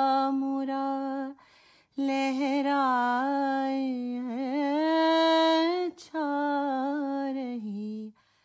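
A woman singing a slow raag-based melody alone, without accompaniment, holding long notes with wavering ornaments. She pauses for breath about a second and a half in and again briefly near six seconds.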